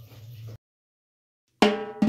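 Faint steady hum for about half a second, then dead silence, then upbeat Latin background music with percussion starting near the end.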